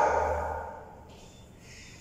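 A man's voice, one held sound that fades out within the first second, then the quiet of a bare room.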